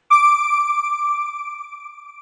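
A single bright electronic chime from a TV channel's logo sting. It sounds once just after the start, rings on one high note with fainter overtones, and fades away over about three seconds.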